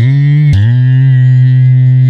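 A sampled hummed vocal note played back in Logic Pro X's Quick Sampler at successively lower keys: one note at the start, then a lower one from about half a second in, held. Each note starts with a short upward scoop. Played down the keyboard in classic mode, the sample pitches down and plays slower.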